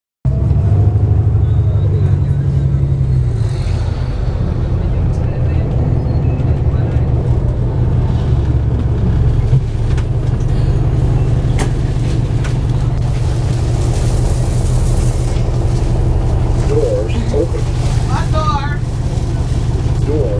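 City bus engine running, heard from inside the passenger cabin as a loud, steady low rumble, with brief voices near the end.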